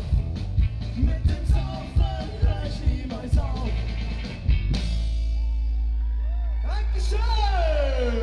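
Ska-punk band playing live with singing over a regular drum beat; about two-thirds of the way in the song breaks into a loud sustained final chord over a steady bass, and near the end a long falling glide in pitch runs down over it.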